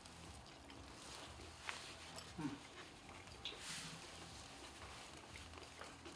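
Quiet room with faint clicks and soft mouth noises of people chewing food, and a short closed-mouth 'mm' of tasting about two seconds in.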